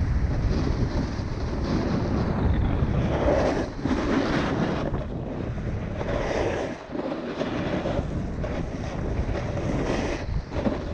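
Wind buffeting the microphone of a camera moving fast downhill, with the scrape of edges on packed, groomed snow swelling with each turn every second or two. The level drops briefly near the middle.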